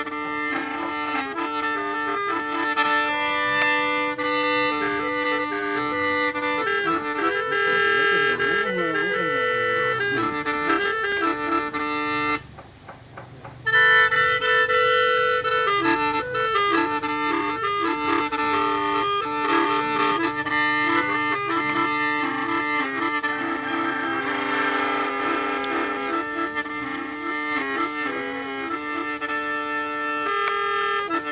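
Đing năm, the Ê Đê gourd mouth organ with bamboo pipes, played: several reed notes sounding together in held chords over a steady drone, the melody moving between sustained notes. The playing breaks off for about a second about twelve and a half seconds in, then carries on.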